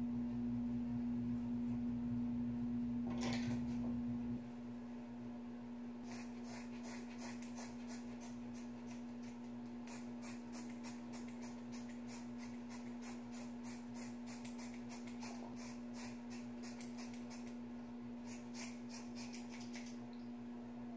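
Scissors snipping repeatedly through a thick dreadlock at the scalp: a rapid run of crisp cuts starting about six seconds in, with a short pause near the end before a last flurry. A steady hum sits underneath throughout, with a louder low rumble in the first four seconds.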